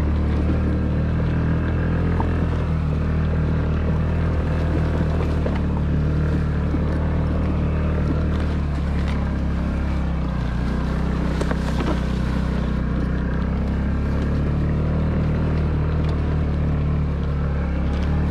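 Honda Ruckus scooter's 49cc four-stroke single-cylinder engine running at a steady, even pitch as it is ridden over rough grassy ground.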